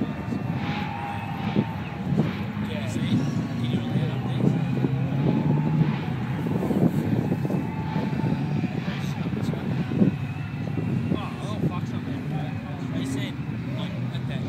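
Car engines running in a steady, continuous din, with indistinct crowd chatter over it.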